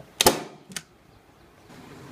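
Handheld staple gun firing staples through a fabric strap into a wooden bed frame: a loud snap about a quarter second in, then a smaller one about half a second later.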